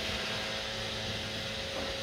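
Steady low background hum and hiss of the room, with faint constant tones and no distinct events.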